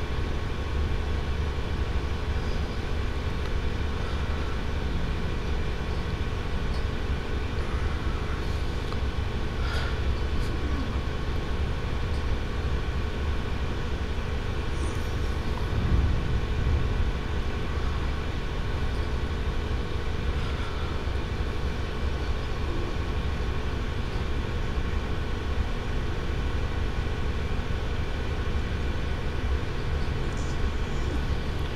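Steady low rumble with a constant hum of several fixed tones and no distinct events, with a brief low thump about sixteen seconds in.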